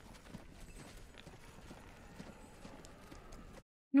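A procession walking along a path, heard quietly on a TV episode's soundtrack: many irregular, overlapping footfalls. It cuts off suddenly near the end.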